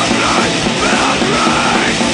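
Swedish kängpunk (d-beat hardcore punk) recording: a dense, loud wall of distorted guitars and drums with a shouted vocal line over it.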